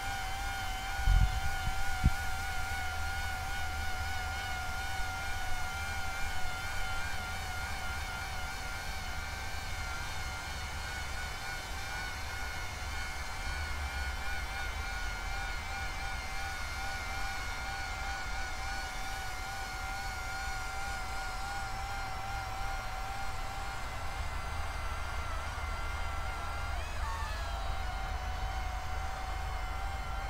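Coaxial copter's counter-rotating propellers and brushless motors whining steadily in flight, the pitch wavering slightly. Near the end the pitch swings down and up as the throttle and roll commands change. A low wind rumble on the microphone runs underneath, with two short thumps about a second in.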